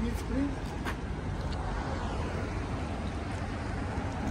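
Steady street ambience with a low traffic rumble, and a few faint voices near the start.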